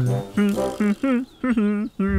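A short melodic phrase on the cartoon's soundtrack: a few quick pitched notes, then a longer held note with a wavering pitch.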